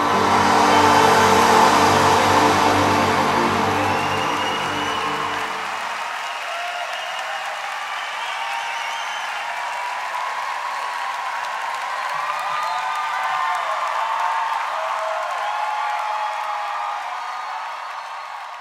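An orchestra holds a final sustained chord that dies away about six seconds in. A large concert-hall audience applauds and cheers, starting loud under the chord and carrying on steadily after it.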